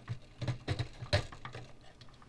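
Light clicks and taps of 3D-printed plastic parts being handled and fitted together by hand: a few irregular knocks, the loudest a little over a second in.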